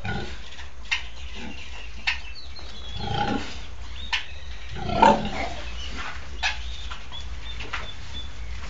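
A sow and her piglets: two short low grunts, the louder one about five seconds in, with brief high squeaks from the piglets and a few sharp clicks.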